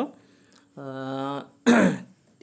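A man makes a steady held voiced hesitation sound for about half a second, then clears his throat with a short, loud rasp near the end.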